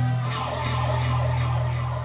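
Electric guitars and bass ringing out through the amplifiers just after a punk song's last beat, leaving a steady low drone from the amps.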